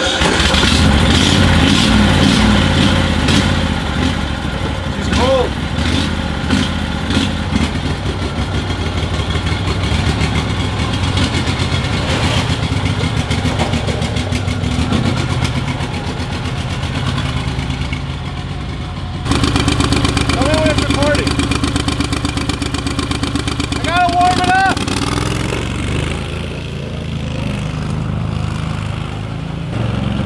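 Argo 6x6 amphibious vehicle's engine catching at the start and running on steadily. The sound changes abruptly about 19 seconds in.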